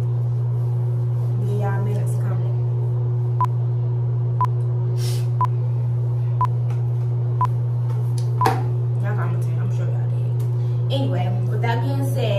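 Six short electronic beeps, evenly spaced about a second apart, over a steady low hum, with faint talk near the start and again near the end.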